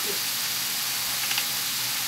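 Sliced liver sizzling steadily in hot oil in a frying pan.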